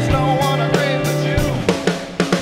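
Live blues-rock band playing, with electric guitar and drum kit. The low end thins out, and a quick run of drum hits comes near the end.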